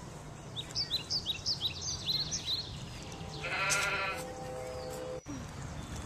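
Birds chirping in quick, repeated short calls, then a loud, wavering, bleat-like voice call for about a second, a little past the middle. A steady tone follows and cuts off sharply about five seconds in.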